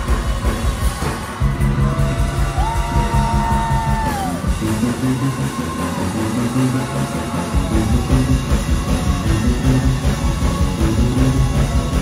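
Live gospel band playing a fast, driving instrumental: rapid drum kit, a moving bass guitar line and keyboard with a few sliding notes.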